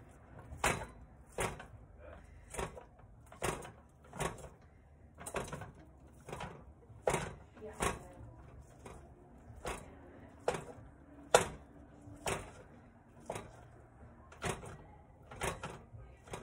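Wooden spatula chopping and scraping raw ground beef against the bottom of a square skillet, about one stroke a second, breaking the meat up.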